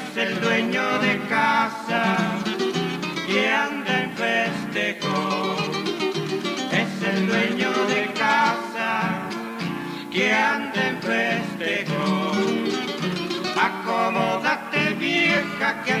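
A Cuyo-style cueca played on acoustic guitars, with a steady strummed rhythm under plucked melody lines.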